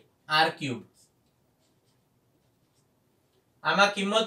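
A man's voice speaking briefly at the start, then a pause of near silence, and speech again near the end.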